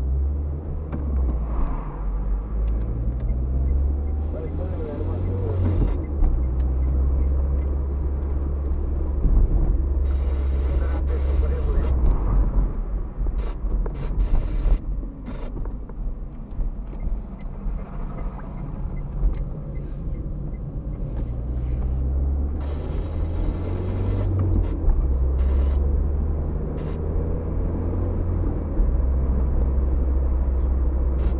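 Car engine and road noise heard from inside the cabin while driving, a steady low drone whose pitch steps upward twice as the car accelerates through the gears.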